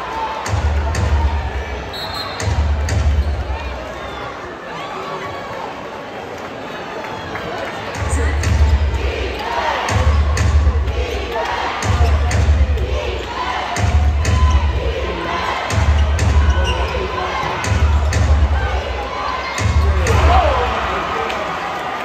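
Arena crowd noise and chatter during live basketball play. Under it runs a deep repeating beat from the arena sound system, about one every two seconds, which drops out for a few seconds near the start. Short sharp knocks come through it, typical of the ball bouncing on the hardwood court.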